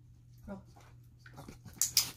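A miniature schnauzer gives a short whine about half a second in, then a handheld training clicker gives a sharp double click near the end, marking the dog's roll-over as the behaviour about to be rewarded with a treat.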